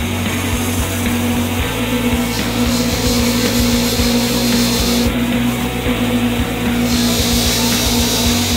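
Rock music playing over the steady whir of a bench buffing wheel as a small metal piece is pressed against it to polish it.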